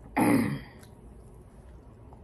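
A woman clears her throat once: a single short, harsh burst just after the start, lasting about half a second.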